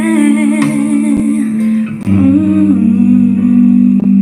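Female voices singing slow, long-held notes with vibrato over a sustained instrumental backing; about halfway through, the backing moves to a lower held chord.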